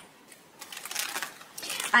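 Tarot cards being shuffled by hand: a papery rustle of quick small clicks that starts about half a second in and grows louder.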